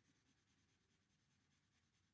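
Near silence, with only a very faint scratching of a felt-tip marker scribbling in a shaded shape on paper.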